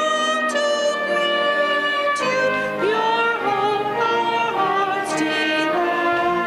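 A hymn sung in slow, long-held notes, a woman's voice close to the microphone, the voice sliding up into some of the notes.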